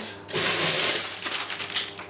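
Plastic bag of curly kale crinkling and rustling as it is pulled from the fridge and handled, a dense crackling that starts about a third of a second in.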